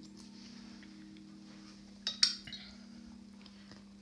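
A quick double clink with a short ring about halfway through, as a paintbrush is knocked against hard watercolour gear while a round brush is swapped for a flat one. A steady low hum runs underneath.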